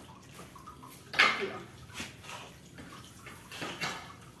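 Potting soil mixed with crushed charcoal being stirred and scooped on a concrete floor: a few short gritty scrapes and rustles of a small ladle and hands working into the heap.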